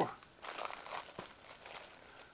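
Clear plastic zip-lock bags crinkling faintly as hands rummage through them, with a single light click about a second in.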